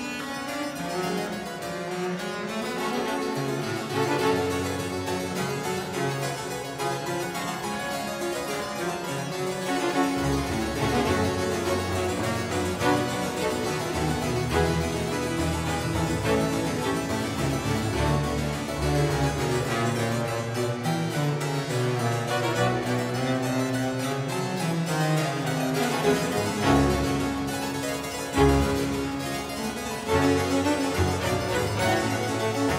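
Baroque ensemble music led by a two-manual harpsichord played with both hands, its plucked notes running continuously over a string ensemble's bass line.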